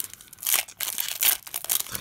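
Pokémon trading cards rustling and crinkling as they are handled and slid against each other, in several short bursts, the loudest about half a second in.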